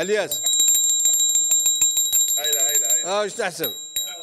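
Brass mortar (mehras) struck rapidly with its brass pestle: a fast run of metallic clinks over a steady, high bell-like ringing, briefly overlaid by a man's voice near the end.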